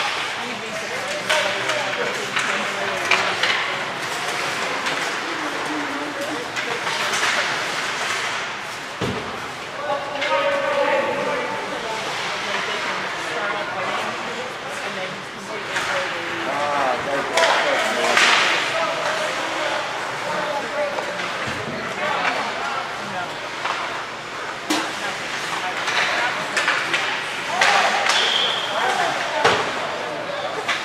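Ice hockey play: sharp clacks and knocks of sticks and puck, some against the boards, over indistinct shouting from players and spectators.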